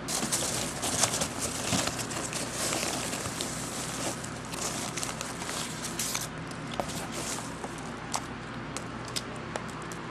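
Foam packing peanuts rustling and crackling as hands dig through them in a box. The rustling is dense for about the first six seconds, then thins to scattered clicks.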